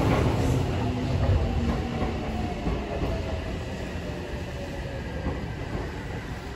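Electric commuter train moving at the station platform: a rumble that slowly fades, with a motor whine that falls gradually in pitch.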